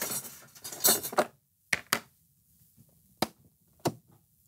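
A small baking pan scraping and clattering as it is slid into a light-bulb toy oven, followed by a few separate sharp clicks.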